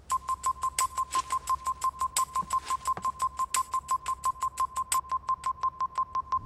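Rapid electronic beeping, about eight short beeps a second, all at the same pitch and each with a sharp click, keeping an even ticking rhythm.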